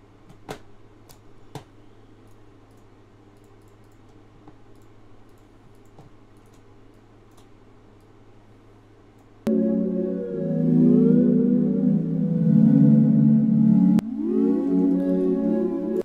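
Low hum with a few faint clicks, then about nine and a half seconds in a synth pad starts abruptly and loud: the Omnisphere 'Granular Vibrasines' patch holding chords, with shimmering granular tones gliding up and down over them. The chord shifts about four and a half seconds later.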